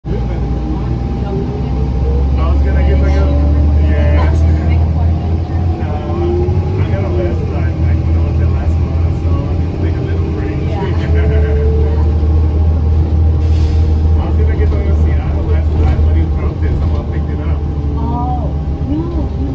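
Cabin sound of a 2007 New Flyer C40LF bus with a compressed-natural-gas Cummins Westport C Gas engine, driving. A deep engine drone eases off for a few seconds midway and then comes back, with faint whines rising and falling underneath.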